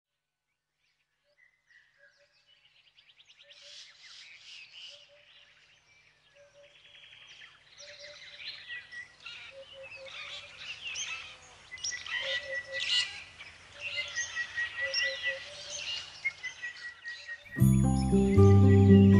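Many birds chirping, trilling and calling together, fading in from silence over the first few seconds and growing louder. Loud music starts just before the end.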